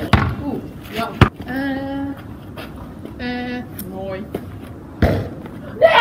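A basketball knocking against the hoop and thudding on the paved ground, two sharp hits in the first second or so, with a girl's voice making a couple of short held sounds.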